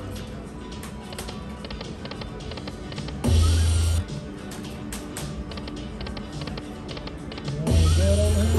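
Golden Century Dragon Link slot machine running through spins: the game's music with a run of sharp clicks as the reels spin and stop. A loud low drone sounds as a new spin starts, about three seconds in and again near the end.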